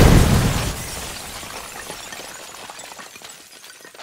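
Shattering-glass sound effect: a loud crash that trails off into many small tinkling fragments, fading away over about three seconds.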